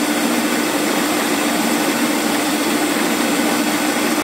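Electric stand mixer running at a steady speed, its motor giving a constant whirring hum as the beaters whip cream-cheese frosting in a plastic bowl.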